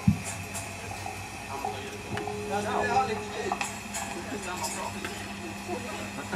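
A steady electrical hum from the stage amplifiers and PA, with one sharp low thump just after the start, like a microphone or instrument being knocked, and faint voices in the background.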